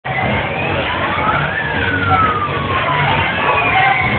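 Loud fairground din around a spinning ride, through which thin siren-like tones glide up and then slowly down, several overlapping; one rises and falls over about two seconds.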